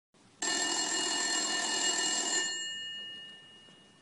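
A telephone bell ringing once for about two seconds, its tones dying away over the next second.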